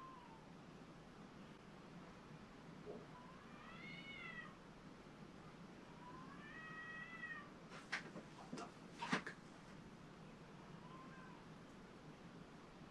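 A cat meowing faintly: a few drawn-out meows that rise and fall in pitch, the clearest two in the middle. A few faint sharp taps come in the second half.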